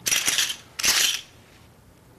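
Poker chips clattering onto a table in two short bursts, a bet going into the pot.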